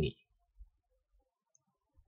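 Near silence: quiet room tone, with one faint brief sound about half a second in.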